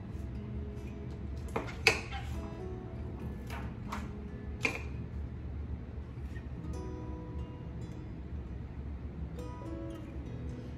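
Quiet background music, with about five light plastic clicks and taps in the first five seconds as clear letter stamps are peeled off their sheet and pressed onto an acrylic stamp block.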